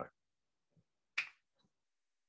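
Near silence, broken by one short, sharp click a little over a second in.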